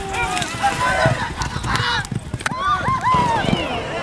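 Racehorses breaking from the starting gate and galloping on a dirt track, their hoofbeats under people shouting and calling out, the calls loudest near the end.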